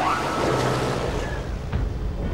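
Cartoon sound effect of a jet-propelled motorbike engine: a loud whoosh that starts abruptly and falls away. A low rumble builds from about a second in.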